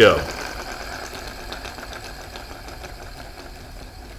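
A wound rubber band unwinding on a wooden rubber-band racer, spinning the rear axle and wheels with a fast, even rattle that gradually fades as the band runs down.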